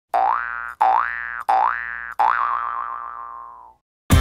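Cartoon boing sound effect: four springy boings rising in pitch, one after another. The last is longer and wobbles as it fades away.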